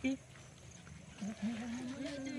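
A person's voice: a short word at the start, then from about a second in a long, held, hum-like vowel on one steady pitch.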